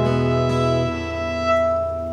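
Electric violin holding a long bowed note over a ringing acoustic guitar chord, the closing chord of the song. The lower notes fade away about a second in, leaving the violin note sounding alone.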